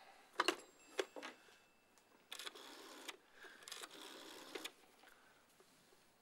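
Desk telephone being used: a few clicks as the handset is lifted, then the dial is turned and whirs back twice, each return lasting a little under a second.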